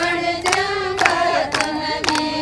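Group of women singing a Haryanvi folk song (lokgeet) together, keeping time with steady hand claps about twice a second.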